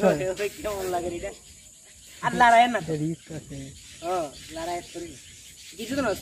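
People's voices talking in short bursts with pauses between; the speech is indistinct.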